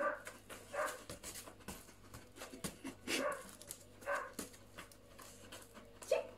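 A collie giving four short whining yelps, two close together at the start and two more a few seconds later.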